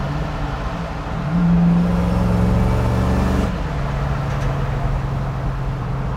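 The Ringbrothers 1966 Chevelle's Chevy V8 cruising at low revs in sixth gear at highway speed. About a second in, the engine note rises slightly and gets louder for a couple of seconds as it pulls, then settles back to a steady hum.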